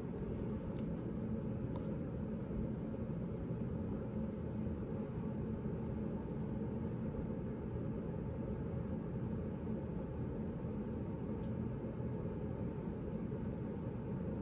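Steady low rumble of room background noise, unchanging throughout, with nothing else standing out.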